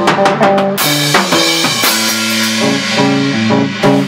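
Live math-rock band playing loud: a drum kit with kick, snare and cymbal hits under an electric bass playing a riff of short notes that keep changing pitch.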